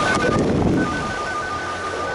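Skis sliding over groomed snow, with wind on the microphone and a louder scraping rush in the first second. Two steady high tones sound together throughout, with short breaks.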